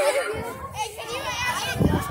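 Several children's voices overlapping in high-pitched chatter and calls, with no clear words. A low rumble on the microphone comes in near the end.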